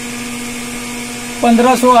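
Steady machine hum with one strong pitched tone and fainter overtones, from running electrical equipment; a man's voice comes in near the end.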